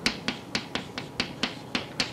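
Chalk tapping and striking against a blackboard while writing: a run of sharp, evenly spaced taps, about four a second.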